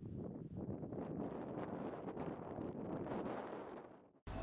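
Wind buffeting the microphone outdoors: a steady, fluttering rush of noise that fades out near the end.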